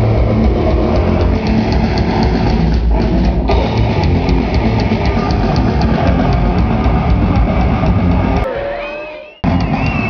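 Live hardcore punk band at full volume through a club PA, heard from the crowd: distorted guitars, bass and fast drums with rapid cymbal hits, with a brief stop about three seconds in. Near the end the song dies away with a few wavering whines, then loud sound cuts back in abruptly.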